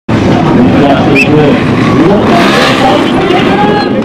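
A trials motorcycle engine running amid people's voices, cutting in suddenly at the start.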